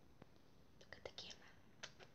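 Near silence broken by a few faint, short whispered hisses and mouth clicks, bunched about a second in.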